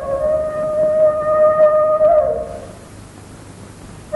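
Film background score: a single held flute note that wavers slightly, then bends and fades out about two and a half seconds in, leaving a quiet pause.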